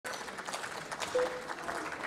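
Scattered applause from a small group, irregular claps, with a brief steady tone about a second in.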